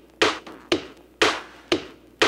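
A steady percussion beat: sharp hits about two a second, a louder one alternating with a softer one, each dying away quickly.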